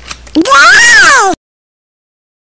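A single loud meow-like cry about a second long that rises and then falls in pitch, cut off suddenly.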